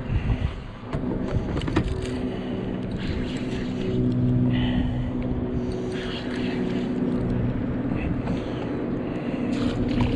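A Daiwa Saltist spinning reel being cranked with a steady whirring hum as a hooked sheepshead is fought up to the boat. Near the end the fish splashes at the surface.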